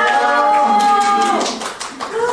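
Unaccompanied singing: a voice holds one long steady note for over a second, then the sound dips away near the end.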